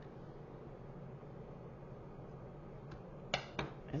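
Faint room tone, then about three seconds in a few sharp light knocks as a pen-style pick tool is set down on the craft table.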